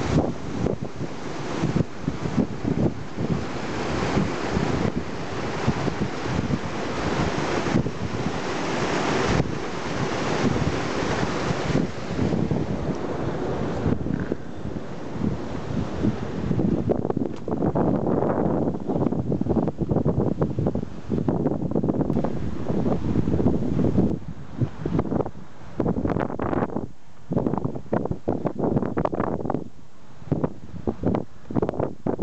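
Rushing, foaming stream water pouring through a narrow stone-walled channel, under heavy wind buffeting on the microphone. About halfway through, the hiss of the water fades and gusty wind buffeting with brief lulls is left.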